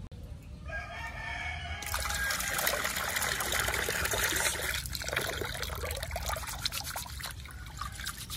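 Water running from a PVC pipe tap into a metal pot: it starts about two seconds in and is loudest for a few seconds, then falls to a lighter trickle with splashes near the end. A rooster crows once about a second in.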